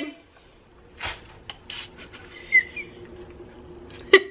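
Febreze ONE non-aerosol air mist trigger sprayer giving two short hissing bursts of spray, the second about three-quarters of a second after the first.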